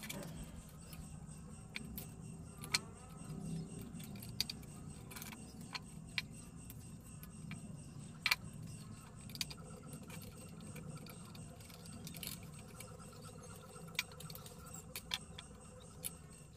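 Scattered small clicks and taps, a few seconds apart, from hands handling and twisting insulated copper wires and small tools on a wiring panel. A faint steady low hum lies beneath.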